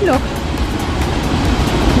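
Steady rushing roar of a large waterfall, Wapta Falls, a continuous deep noise without any rhythm.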